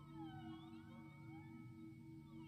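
Quiet passage of a violin concerto for solo violin and orchestra: a soft held low chord beneath high pitches that slide up and down, several overlapping glissandi.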